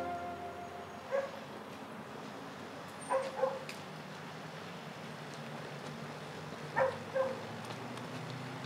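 A dog barking in short barks: one bark about a second in, then two quick pairs, one around three seconds in and one near the end.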